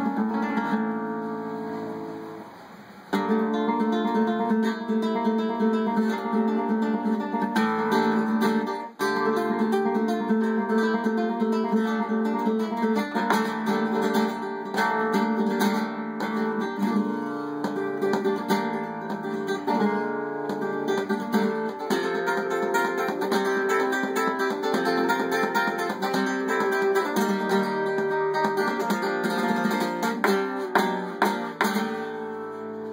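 Flamenco guitar (nylon strings) played solo. A chord rings out and fades over the first few seconds. The playing starts again sharply at about three seconds, breaks off briefly near nine seconds, then runs on with strummed chords and single-note lines.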